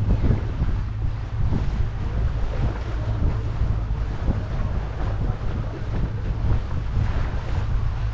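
Wind buffeting the microphone of a moving motorboat, a steady low rumble, with water rushing along the hull.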